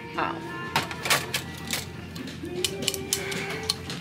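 Plastic pump bottles knocking and clicking as they are handled and taken from a shelf, a scatter of short sharp ticks, over the store's background music.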